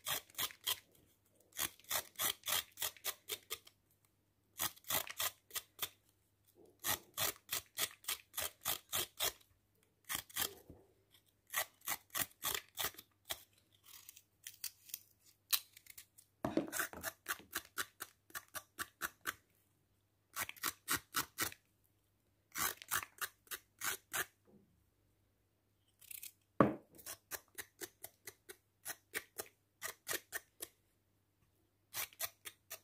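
A small kitchen knife scraping the skin off a raw carrot, in quick rasping strokes about five a second. The strokes come in runs of a second or three, with short pauses between.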